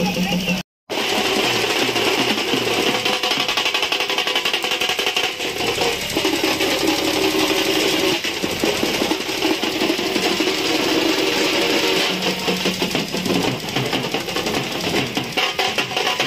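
Loud festival procession music with drumming over a noisy crowd of voices. The sound cuts out completely for a moment just under a second in.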